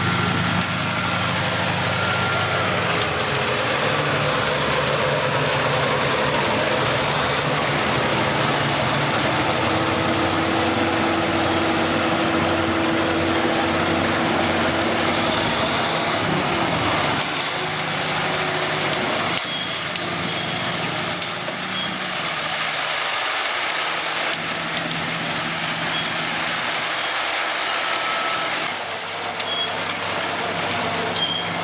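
The giant ACCO crawler bulldozer, driven by two Caterpillar diesel engines, running steadily and loudly as it moves on its steel tracks. Thin high squeals come through now and then, and the sound eases somewhat after about 17 seconds.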